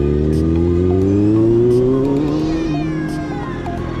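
Motorcycle engine accelerating, its pitch rising steadily for nearly three seconds, then dropping at a gear change, under background music with a steady beat.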